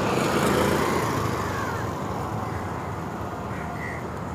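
A motorbike passing close by: its engine and tyre noise swell to a peak about half a second in, then fade away over the street's steady traffic hum.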